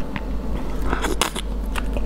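The shell of a cooked shrimp being cracked and peeled by hand: small crackles and clicks, bunched together about halfway through.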